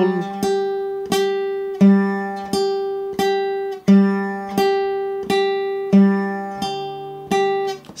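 Acoustic guitar plucked slowly with the fingers, one note at a time: the open G string, then two G's an octave higher, repeated in an even three-beat waltz rhythm, each note left to ring.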